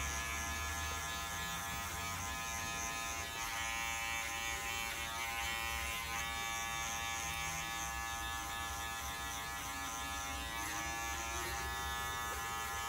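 Electric hair clipper with a guard comb attached, running steadily as it cuts hair at the sides of the head: a constant buzzing hum with many overtones.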